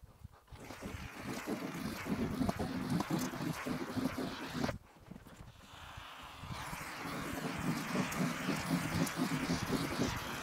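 Canister foam gun hissing and sputtering as it lays beads of foam adhesive onto plywood decking, with a short break about five seconds in before it runs again.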